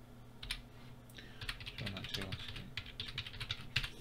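Typing on a computer keyboard: a single keystroke early, then a quick run of keystrokes from about a second and a half in.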